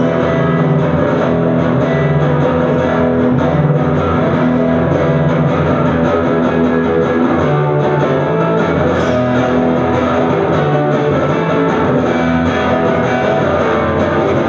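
Live instrumental passage of amplified electric guitar, strummed chords ringing and changing every second or two, with no singing.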